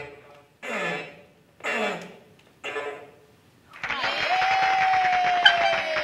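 A child's voice making three short sounds, each sliding down in pitch, into a toy echo microphone. About four seconds in, music with a long held, slowly falling note comes in and keeps going.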